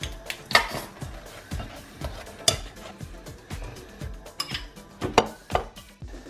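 A handful of sharp clinks of a knife and ceramic plate on a kitchen counter, the loudest about two and a half seconds in and again near the end, over background music.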